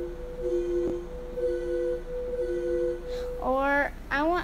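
Digital keyboard playing a soft, pure-toned voice: one note held steadily while a lower note sounds on and off several times, with a small click about a second in. The held note stops shortly before the end.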